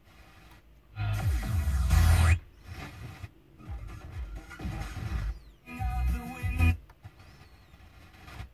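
Car FM radio being tuned step by step across the band. Short snatches of broadcast music cut in and out, with muted gaps between frequencies; the loudest bursts come about a second in and again near six seconds.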